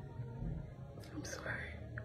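A woman's soft breathy sounds, two brief ones about a second in, over a low steady hum.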